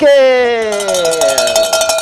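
A studio sound effect played between announcements: a pitched tone glides steadily downward, and from about a third of the way in a steady ringing tone with a fast rattle joins it, cutting off just after.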